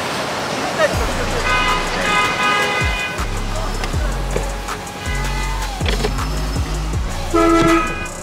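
Car horns honking in street traffic, the loudest a blast of under a second near the end, over music with a deep bass line that changes note every second or so.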